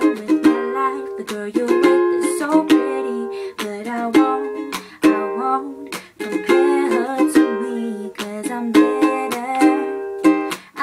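Ukulele strummed through a G–D–Em–D chord progression, with a woman singing long-held notes over it.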